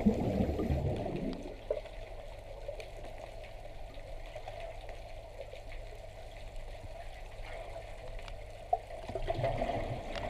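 Muffled underwater water noise picked up by a submerged camera, with a louder low bubbling rush in the first second or so and again near the end. There is a single sharp click shortly before the second rush.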